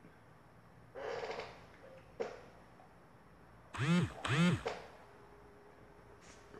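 A man sips from a mug with a short slurp about a second in, then clears his throat twice in quick succession near the middle; the two throat clears are the loudest sounds.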